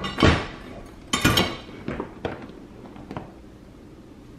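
A hard-shell suitcase being lifted and set down onto a bathroom scale: a thump just after the start, a louder clattering knock about a second in, then a few light clicks as it settles.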